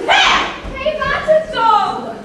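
A girl's voice speaking loudly and animatedly, with a strong exclamation at the start.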